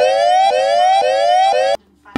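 Electronic siren-like sound effect in the edited soundtrack: four quick rising whoops, about two a second, that cut off suddenly near the end.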